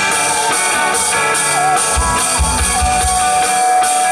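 Live rock band playing: drum kit with cymbals and kick drum under sustained keyboard lines, with one high melodic note held for over a second near the end.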